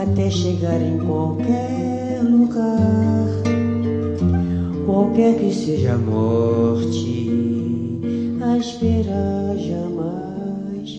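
Solo nylon-string acoustic guitar played live: plucked melody over a steady bass line, with quick runs of notes.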